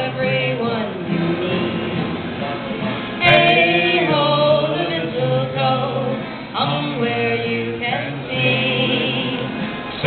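A woman and a man singing a Christmas carol together to acoustic guitar accompaniment, amplified through small PA speakers. A brief click about three seconds in.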